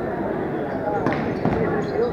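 A handball bouncing on the hard sports-hall floor, a couple of sharp bounces about a second in, over a steady murmur of voices echoing in the hall.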